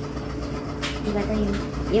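A woman says a few short words over a low steady hum, with one sharp click a little under a second in from a small bottle being handled on the counter.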